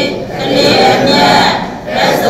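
A large group of voices chanting together in unison, a continuous Buddhist recitation with a short break between phrases near the end.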